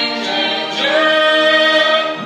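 Operatic-style singing voices holding sustained notes. About a second in, a voice slides up into a long held note that carries to the end.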